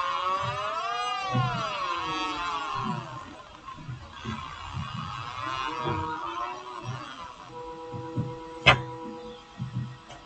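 Synthesized electronic tones generated in TouchDesigner from tracked movement. A stack of tones wobbles and slides in pitch for the first few seconds, then settles into several steady held tones. Irregular low pulses run underneath, and a sharp click comes near the end.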